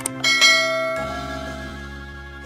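A bell-like chime struck once about a quarter second in, ringing and slowly fading, over background music.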